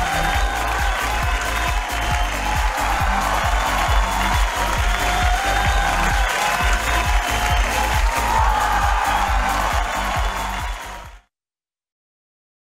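Television show's closing theme music with a steady beat, cutting off suddenly near the end.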